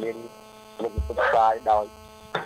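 A man speaking Khmer into a close microphone, with a short pause, over a steady electrical mains hum; a low thump comes about halfway through.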